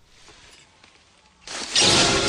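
A quiet pause with only faint room tone. About one and a half seconds in, the soundtrack of a movie clip cuts in abruptly and loud, a dense noisy sound that carries on to the end.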